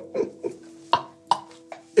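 A man laughing under his breath in about five short bursts, over soft background music holding a steady note.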